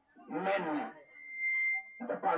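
A man's voice speaking briefly, followed by a steady high-pitched tone lasting under a second.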